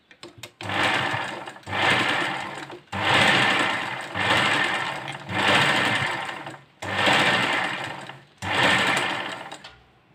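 Sewing machine stitching green blouse fabric in seven short runs of about a second each, with brief pauses between, each run starting loud and fading. A few light clicks come first.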